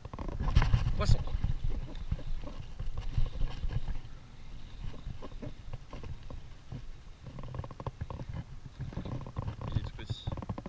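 Uneven low rumble of wind and handling noise on the action camera's microphone, loudest in the first second, while a spinning reel is cranked to bring in a hooked fish.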